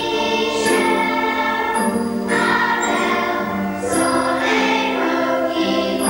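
A children's school choir singing, with descant recorders playing along, in held notes that move to a new pitch every second or two.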